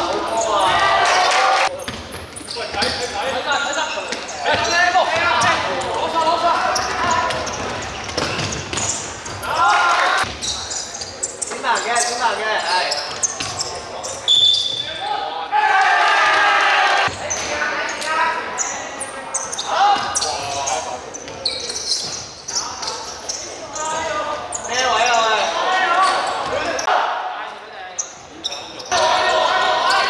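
Basketball game in a large indoor hall: a basketball bouncing on the wooden court amid players' shouting voices, which echo in the hall.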